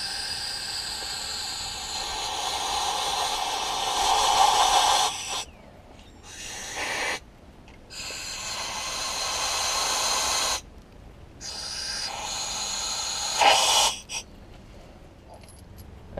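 Compressed-air blow gun hissing as it blasts concrete dust out of drilled anchor holes, with a faint whistle in the blast. It comes in four bursts: a long one of about five seconds, a short one, then two of two to three seconds each.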